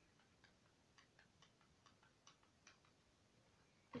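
Near silence: room tone with about ten faint, short, irregular ticks over the first three seconds.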